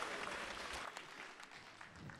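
Faint audience applause, a patter of many scattered claps that dies away over the two seconds.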